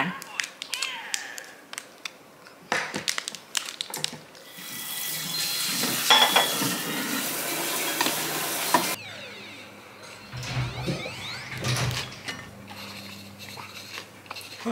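Kitchen sounds while lunch is made: scattered clicks and crinkles, then a steady rushing hiss of about four seconds that cuts off suddenly, then a few duller knocks.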